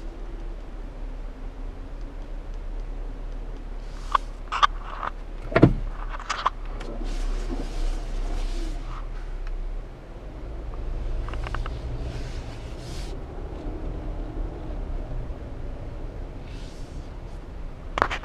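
Cabin sound of a 2014 Jeep Cherokee Trailhawk moving off slowly: a steady low engine and road hum, with a handful of clicks and one sharp thump about five and a half seconds in.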